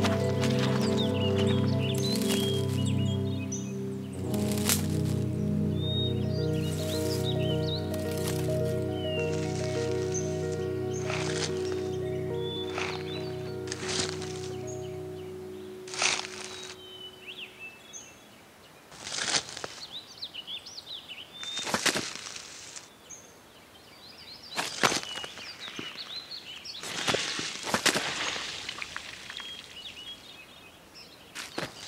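Slow, calm instrumental music that fades out about halfway through. It is followed by the irregular squelching and rustling steps of children's wellington boots tramping through wet leaves and soggy mud, with birds chirping.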